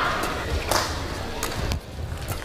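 Badminton rally: a shuttlecock struck back and forth by rackets, heard as several short, sharp hits about half a second to a second apart over the hum of a large indoor hall, with footfalls on the court.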